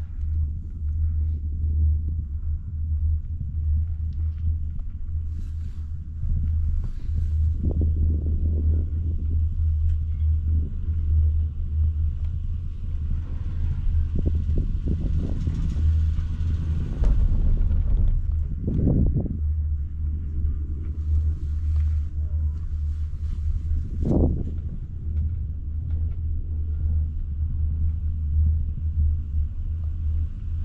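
Steady low rumble of a six-seat Doppelmayr chairlift ride, with a louder stretch of rumbling and clatter a little past the middle as the chair runs through a lift tower's sheave rollers.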